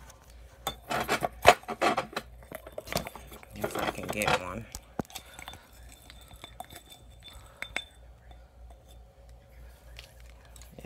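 A spoon clinking and scraping in a glass jar of dried cocolmeca root, with the chunks rattling. It comes as two busy bursts of clatter in the first half, then scattered light clicks.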